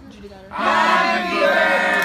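A group of people shouting and cheering together, coming in loud about half a second in after a brief lull.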